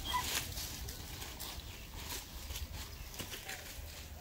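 Footsteps crunching through a thick layer of dry leaf litter, irregular rustling and crackling.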